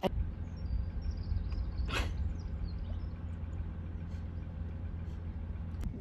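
Steady low rumble of a car driving, with a short higher-pitched sound about two seconds in.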